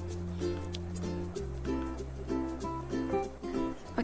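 Background music: a light tune of short, repeated notes over a held bass note that shifts pitch twice.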